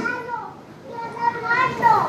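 A faint high-pitched voice, much quieter than the preacher's, from the congregation, its pitch falling near the end.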